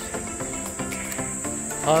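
Insects holding one steady high-pitched drone over background music.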